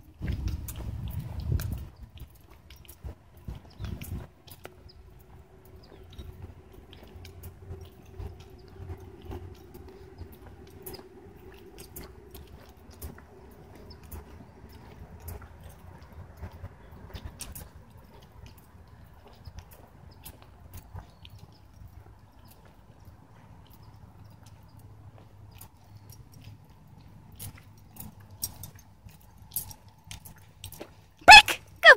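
Footsteps crunching on loose wood-chip mulch, irregular steps over a low rumble, louder in the first couple of seconds.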